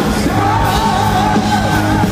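Power metal band playing live, with drums and electric guitars under a high, held, wavering vocal line sung into a microphone.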